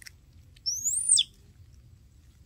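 A single high, whistle-like animal call lasting about half a second: it rises, then drops steeply before cutting off.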